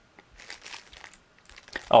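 Soft, scattered crinkling of a clear plastic bag holding a USB power-switch cable as it is handled in a cardboard box.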